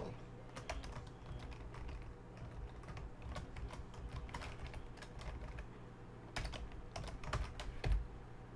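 Computer keyboard typing: irregular runs of keystroke clicks, with one louder click near the end.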